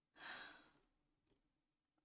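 A woman's soft sigh: one short breath of under a second.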